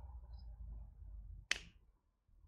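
A single sharp finger snap about one and a half seconds in, over a faint low hum.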